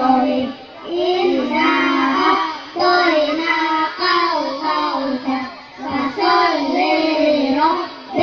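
A group of young boys chanting a short Qur'anic surah together in a melodic recitation, in sung phrases of a second or two with short breaks for breath between them.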